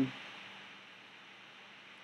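Faint steady hiss of room tone and recording noise, with a trailing "um" cut off right at the start.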